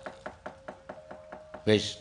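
A dalang's wooden cempala mallet knocking on the wooden puppet chest (dhodhogan) in a rapid, even run of about six knocks a second, with a faint steady tone behind it.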